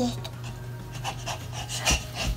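A toddler moving about and jumping: soft rustling and rubbing, then a sudden thump, like a landing on the floor, near the end, over a steady low hum.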